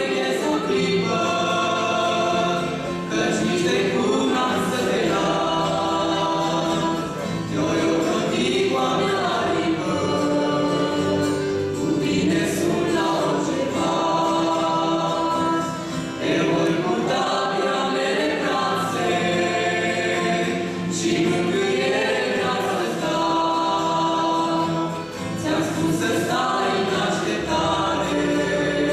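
A woman's and a man's voices singing a slow Christian song in Romanian together, accompanied by acoustic guitar.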